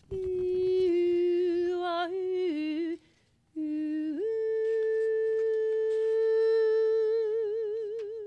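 A woman's unaccompanied wordless singing. A held note steps down twice, breaks off, then a new note slides up and is held long, with vibrato near the end.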